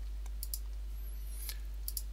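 A few faint computer mouse clicks, short and sharp, spread through the pause, over a steady low hum.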